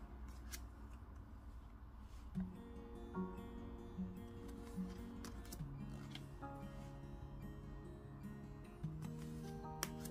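Soft background music: a run of short notes about a second apart, then longer held notes. A few faint clicks from tarot cards being slid off the deck by hand, the sharpest near the end.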